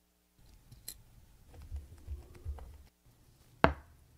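Close-miked watchmaking: steel tweezers and small parts tapping and clicking on a watch movement, with soft handling bumps. One sharp click near the end is the loudest sound.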